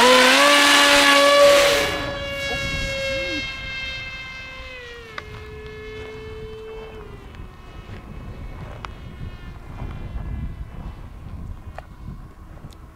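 Brushless electric motor and 7x5 propeller of a foam RC jet running at full throttle for a hand launch: a loud whine with a rush of air. The whine then dips in pitch around five seconds in and fades as the plane flies away.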